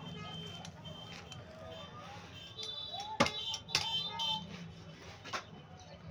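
Heavy butcher's cleaver chopping into a buffalo hind leg on a wooden block: two sharp strikes about three seconds in, half a second apart, and a lighter one near the end.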